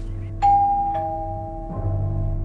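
Two-tone doorbell chime: a higher "ding" struck about half a second in, then a lower "dong" half a second later, both ringing on, over background music.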